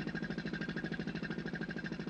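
A machine running steadily with a fast, even chugging, about fourteen beats a second.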